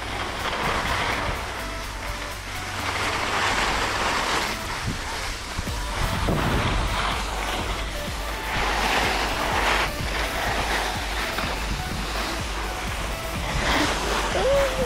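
Skis scraping and carving over packed snow during a run of turns, the hiss swelling with each turn, over a low rumble of wind on the camera microphone.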